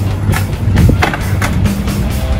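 Background music with a steady beat over a skateboard rolling on pavement.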